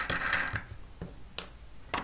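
Metal wing nuts being turned by hand down threaded carriage bolts: a short scraping rattle at the start, then a few separate small metallic clicks.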